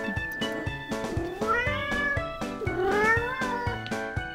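Domestic cat meowing twice, each meow about a second long, rising and then falling in pitch: begging to be fed. Background music with a steady beat plays underneath.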